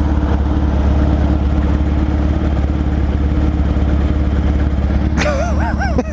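Motorcycle engine idling steadily with a deep, even rumble, close to the microphone.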